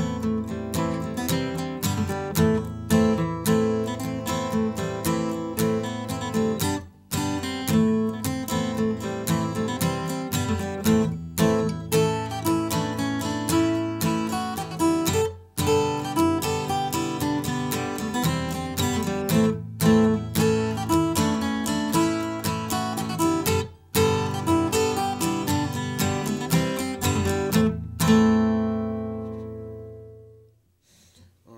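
Acoustic guitar in standard tuning strummed as a rhythmic accompaniment to an Irish polka, with short breaks every four seconds or so, ending on a chord that rings out near the end.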